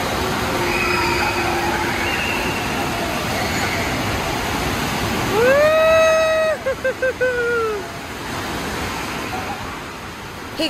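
Indoor wave pool and fountain jets making a steady rush of water, with children's voices echoing in the hall. About five seconds in a child's voice calls out in one long held note that breaks into short pulses and falls away.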